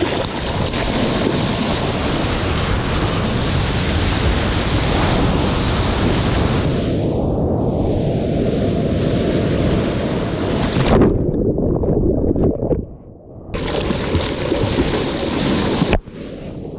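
Sea water rushing and splashing close to a surfing action camera's microphone, with wind on the microphone, as a surfer paddles and rides a breaking wave. Past the middle the sound goes muffled and drops in level for about two seconds, then the splashing returns.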